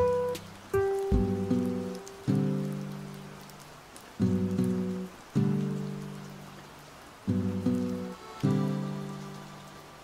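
Calm background music: plucked, guitar-like chords struck every second or two, each ringing out and fading, over a faint hiss.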